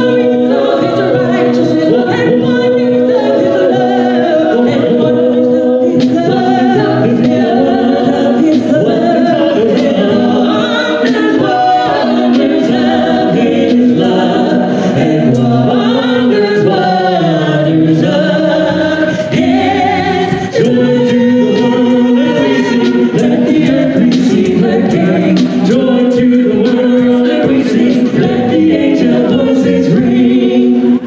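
A small a cappella vocal group of men and women singing a song in close harmony into handheld microphones, amplified through a stage PA.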